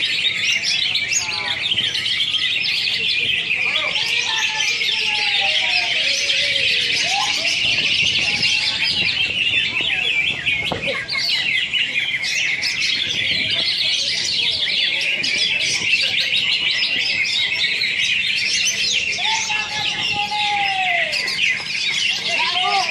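Many caged greater green leafbirds (cucak hijau) singing at once in competition: a dense, continuous chorus of rapid high chirps, trills and whistles, with a few slower lower gliding calls now and then.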